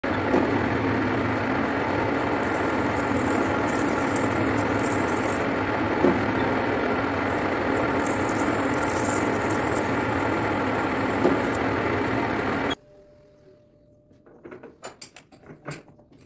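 Metal lathe running under cut: a tool forming a groove in a spinning metal bar, a steady, dense machining noise with the spindle's hum. It stops abruptly about 13 seconds in, and light clicks and knocks follow near the end.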